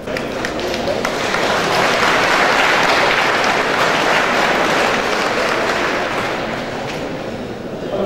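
Audience applauding: the clapping starts suddenly, swells over the first two seconds and slowly tapers off towards the end.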